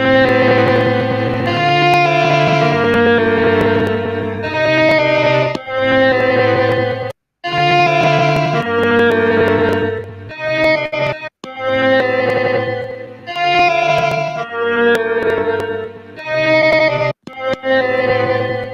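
Chopped music sample of sustained, keyboard-like chords played from a sampler's pads, changing chord every second or two and cutting off abruptly three times.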